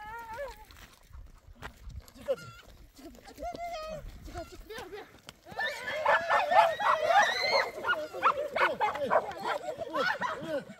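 Several people shouting and screaming in a scuffle: scattered cries at first, then loud overlapping shrieks and shouts from about five and a half seconds in.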